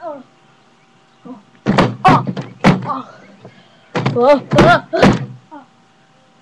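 A person's wordless vocal sounds close to the microphone, loud and distorted, in two bursts with thumps mixed in: one about two seconds in and one about four to five seconds in.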